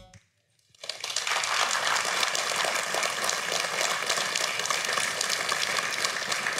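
Audience applauding. The clapping starts about a second in, after a brief silence, and holds steady.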